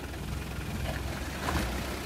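Engine of a towing SUV running steadily with a low rumble while it holds a tow rope taut to drag a stuck car out of icy water.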